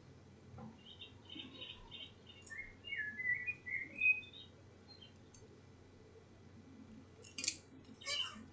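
A bird chirping a run of short, high notes that step up and down for a few seconds. Near the end come a few sharp clicks as a tarot card is laid down on the table.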